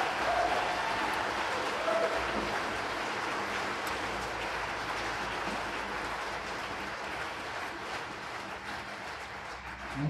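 Audience applauding at the end of a talk, the clapping slowly dying away.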